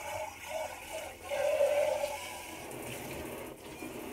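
Water running and splashing as a rice cooker's inner pot is rinsed at the kitchen sink, loudest about a second and a half in.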